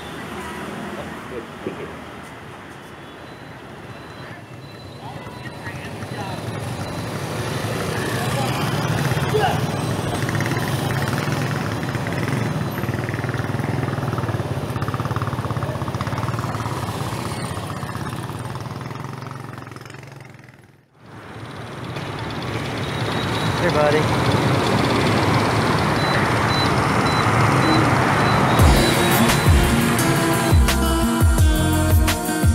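Background song with a singing voice laid over busy street traffic with motorbikes. The sound dips away briefly about two-thirds of the way through and then swells back.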